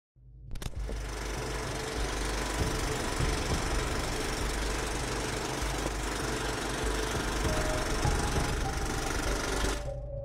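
Steady, dense rattling noise with music under it, starting about half a second in and cutting off just before the end.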